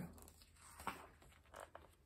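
Faint rustle of a picture-book page being turned by hand, a couple of brief soft paper sounds in near silence.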